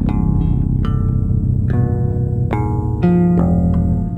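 Electric guitar and electric bass improvising together. Single plucked guitar notes start about once a second and ring out over a continuous low bass line.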